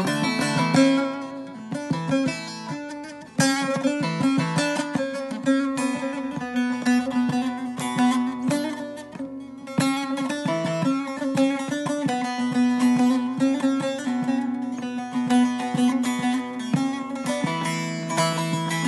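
Solo bağlama (long-necked Turkish/Kurdish saz) picked rapidly: a busy plucked melody over a steady ringing low note, with a brief break about three seconds in before the playing picks up again.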